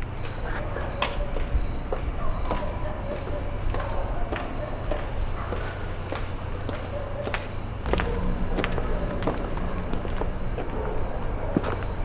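Crickets chirping: a steady, pulsing high trill with a shorter chirp repeating about twice a second. Faint scattered clicks are heard, and a low steady hum comes in about eight seconds in.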